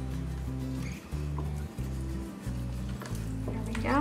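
Background music: steady low notes that change every half second or so.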